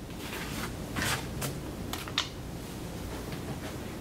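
Playing cards being picked up and slid off a felt table, and casino chips clicking together as they are gathered: a handful of light clicks and soft scrapes.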